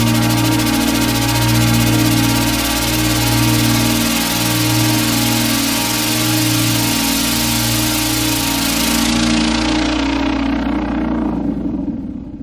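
Electronic dance music: a sustained synth chord over a low, slowly swelling drone with a bright hiss on top. From about three-quarters of the way in, the hiss darkens and fades away, and the bass drops out just before the end, like a breakdown between tracks.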